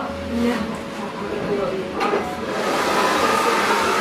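Hand-held hair dryer switched on about two seconds in, then blowing steadily and getting louder.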